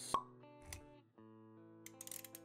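Intro music of held chords with a sharp pop just after the start, a softer low thud a moment later, a brief break, then the chords resume.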